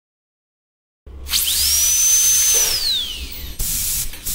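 Dental drill whine starting about a second in: a high-pitched tone climbs quickly, holds steady, then slides down as it winds off over a hiss. A short burst of hiss follows near the end.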